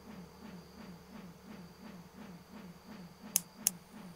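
A low, quiet pulse from the film's score, about three to four short falling tones a second, with two sharp clicks near the end about a third of a second apart.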